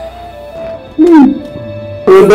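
Film background music with steady held tones. About a second in, a short, loud cry from a person's voice rises and then falls in pitch.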